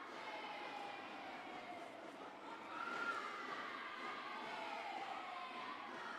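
Arena crowd of spectators shouting and calling out over one another during a pencak silat bout, swelling briefly about three seconds in.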